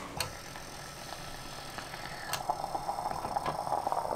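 Aluminium Bialetti moka pot sputtering and gurgling on the stove as the brewed coffee is forced up into the upper chamber. The sputtering starts about halfway in and grows louder. It follows a sharp click just after the start and ends with a click near the end.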